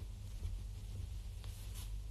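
Low steady hum and faint handling noise on a phone microphone, with two soft clicks in the second half.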